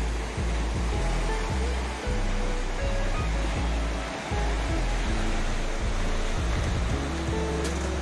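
Background music whose bass notes change every half second or so, over the steady wash of sea surf breaking on rocks.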